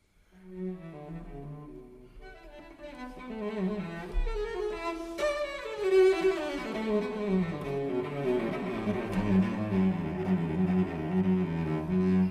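Bowed cello playing, entering about half a second in after a silence, starting quietly and growing louder through fast runs up and down, then settling into low, repeated notes.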